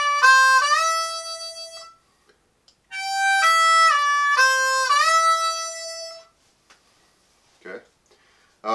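Diatonic harmonica in F, played cross harp in C: a short lick of draw notes with bent notes sliding down and scooping back up, ending on a scooped three draw. It is played twice, with about a second's gap between the two runs.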